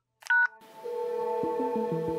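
A short two-tone telephone keypad beep, then background music starts about half a second in: a held note over a stepping, pulsing bass line.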